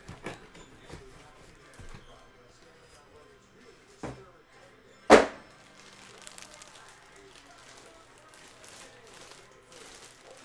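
Light handling noises, a knock about four seconds in, then a single sharp thump about a second later, the loudest sound, as the empty white cardboard box is set down.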